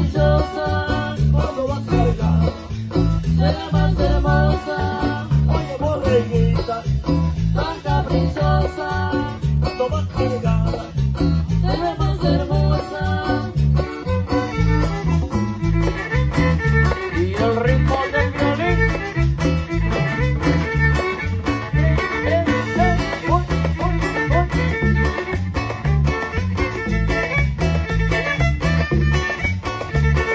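Live tropical band music for dancing, with a steady bass beat under plucked strings and a melody line.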